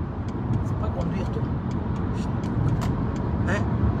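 Steady low rumble of a car's road and engine noise heard from inside the cabin while driving.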